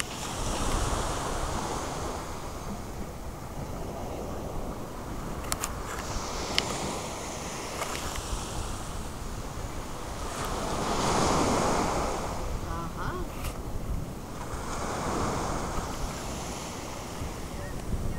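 Ocean surf washing ashore in slow swells, the loudest about two-thirds of the way through, with wind buffeting the microphone.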